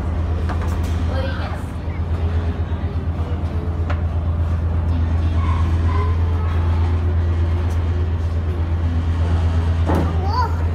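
Ferry's engines running, a steady low drone with a fast, regular throb.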